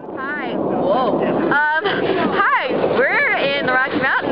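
Excited, high-pitched voices of two young women talking close to the microphone, their pitch swooping up and down, over a steady rush of wind noise. The sound cuts in suddenly at the start.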